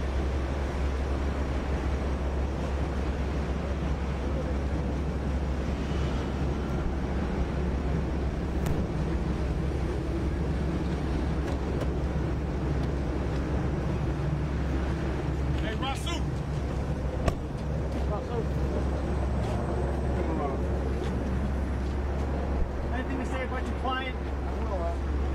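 Steady low rumble of vehicles on the street, with indistinct voices now and then and a couple of sharp clicks late on.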